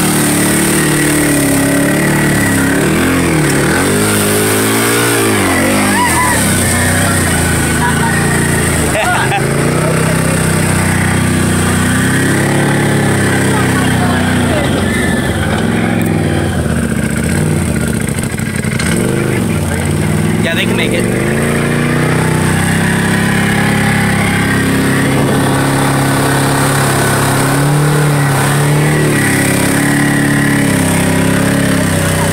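Side-by-side UTV engine running under load, revving up and falling back several times as it is driven along a flooded trail.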